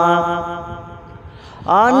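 Naat singing: a solo voice holds a long sung note that fades away over the first second, then after a brief lull slides upward into the next line near the end.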